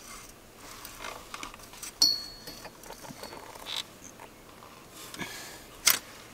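Faint handling sounds of a spin-on transmission filter being tightened by hand from under a truck: light scattered clicks, a sharp metallic clink about two seconds in that rings briefly, and a sharp knock near the end.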